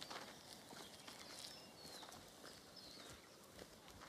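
Faint footsteps through tall grass, with a few high bird chirps.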